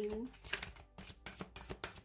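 Tarot deck being shuffled in the hands: a rapid run of card clicks and slaps, about five a second.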